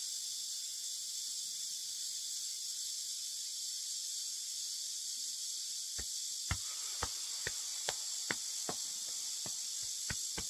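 A steady, high insect chorus runs throughout. From about six seconds in, light pats come roughly twice a second: a hand tapping the shoulder and chest.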